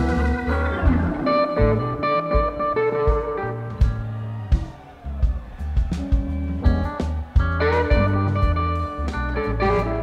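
Rock band playing an instrumental passage live: electric guitar leading over keyboards, bass and drums, with no singing.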